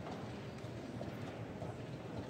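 Busy chess tournament hall: a steady background hubbub with scattered faint clicks of pieces being set down and clocks being pressed at other boards.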